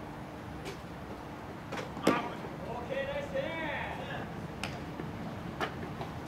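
A voice calling out across a ball field between pitches, heard over steady open-air background noise. A few sharp knocks come at scattered moments, the loudest about two seconds in.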